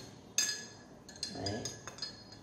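Metal teaspoon clinking against the inside of a drinking glass as it stirs honey into hot water. One sharp ringing clink comes about half a second in, then several lighter clinks near the end.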